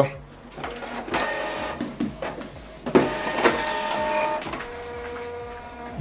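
Canon Pixma all-in-one inkjet printer printing a page: its motors whine in steady tones, broken by sharp clicks and knocks as the paper feeds through and the print head moves. Near the end a single lower steady whine runs on as the page is fed out.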